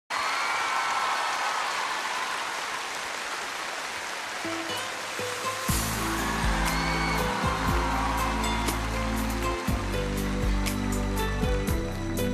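A concert audience applauding, then about five seconds in the instrumental intro of a pop song starts with a deep steady bass and light ticking percussion, the applause dying away under it.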